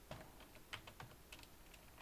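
Faint computer keyboard typing: a handful of soft, quick key clicks spread across a couple of seconds.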